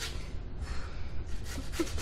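Raw potato rubbed on a metal box grater standing in a steel pot: a few uneven rasping strokes.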